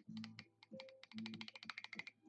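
A fast run of sharp clicks, scattered at first and then crowded together in the second half, over faint low background music.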